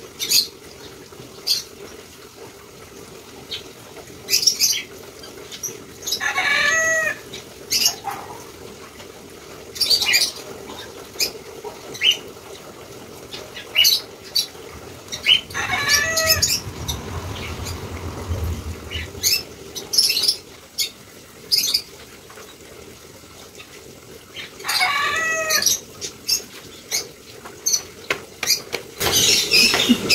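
A bird singing a short phrase of falling notes, three times about nine seconds apart, over scattered sharp ticks and a faint steady hum.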